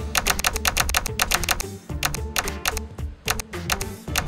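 Fast typing on a laptop keyboard, keystrokes in quick runs broken by two short pauses, as a web address is entered.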